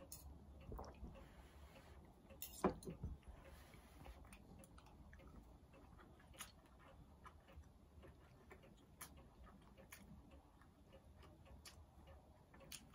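Near silence broken by a few faint clicks of a spoon and fork against a plate, the loudest about two and a half seconds in.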